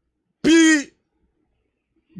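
A man's brief vocal sound, once, about half a second in.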